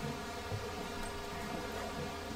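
A steady buzzing hum made of several fixed tones, over faint room noise.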